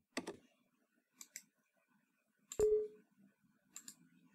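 Scattered computer keyboard and mouse clicks: a couple of keystrokes near the start, two light clicks a little after a second, a louder click about two and a half seconds in followed by a brief low ringing tone, and a pair of clicks near the end.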